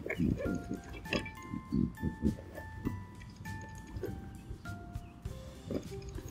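Background music: a light melody of single held notes, with soft low pulses underneath.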